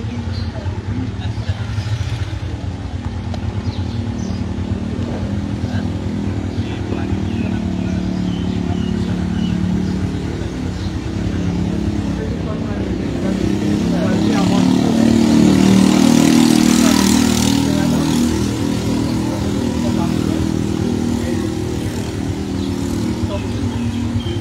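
Motor vehicle engine noise under an ongoing conversation. It grows loudest a little past halfway through, then fades again.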